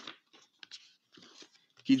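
Sheets of paper rustling faintly in a few short bursts as they are handled and leafed through. A man's voice resumes near the end.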